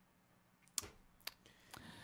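Near silence, broken by two faint, short clicks about half a second apart.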